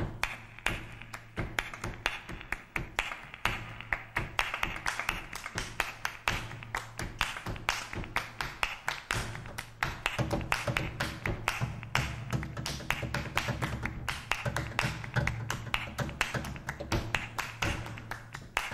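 Flamenco palmas: several musicians hand-clapping a fast, interlocking rhythm of sharp claps, with low sustained notes underneath that grow fuller about halfway through.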